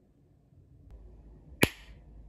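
A single sharp slap of a hand on a bare belly, near the end, with a short tail.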